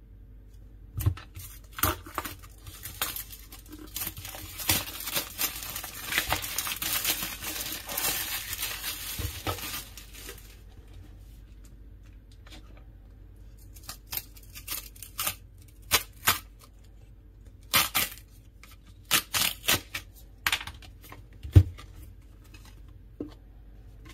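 Plastic shrink-wrap being torn and crinkled off a cardboard box for roughly the first half. Then come a series of separate sharp taps and clicks as the box's cardboard tabs and lid are handled and opened.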